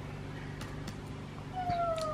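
A house cat gives one long meow near the end, sliding down in pitch, over a low steady hum.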